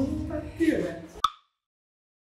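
Voices talking and laughing, cut off about a second in by a single short click, followed by dead silence.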